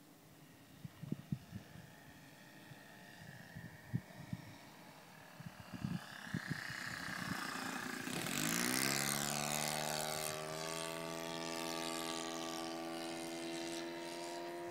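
Radio-controlled Dragonlady model plane's O.S. 52 four-stroke engine growing louder as the plane makes a low pass over the grass, loudest about eight seconds in. Its pitch drops as it goes by, then it runs at a steady note as the plane climbs away. There are a few soft knocks in the first six seconds.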